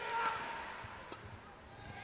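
Faint live sound of a badminton rally in an arena: court-shoe squeaks and crowd murmur, with a light racket-on-shuttle hit about a second in.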